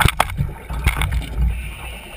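Underwater noise of scuba exhaust bubbles, a steady low rumble and gurgle, heard through the camera's housing, with a few sharp clicks near the start and about a second in.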